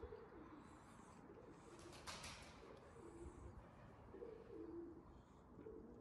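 Faint cooing of pigeons, low coos repeating every second or so, with a brief rustle about two seconds in.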